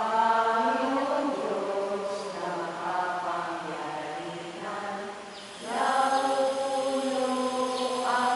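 Voices singing a slow church hymn in long held notes, with a short break between phrases about five and a half seconds in.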